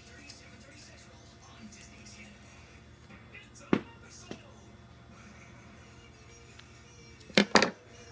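Scissors snipping through duct tape: two sharp snips about half a second apart midway, then a quick run of louder snips near the end.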